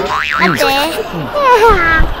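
A springy, wobbling "boing" comedy sound effect early on, over speech from a man and a young boy.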